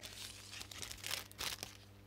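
Clear plastic wrapping crinkling as it is handled, in a run of short, sharp rustles that stop shortly before the end.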